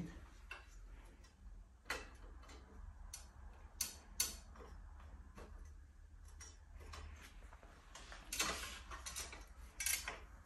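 Scattered light clicks and taps of metal parts being handled as a measuring tool's mounting plate is taken off a motorcycle's steering head. There are a couple of sharper clicks about four seconds in and a cluster of them near the end.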